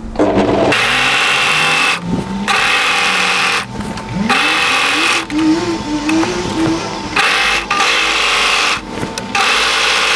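Brother 1034D four-thread overlocker stitching and trimming along a cotton fabric edge. It starts just under a second in and runs in spurts, with four short stops as the fabric is guided round.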